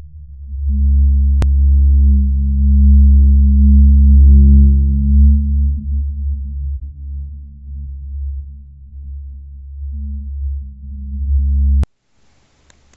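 Low synthesized drone of several held tones, louder in the first half, with the held notes shifting partway through. There is a single sharp click about a second and a half in, and the drone cuts off abruptly near the end.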